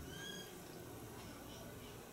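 Quiet room tone with one faint, short, high chirp about a quarter of a second in.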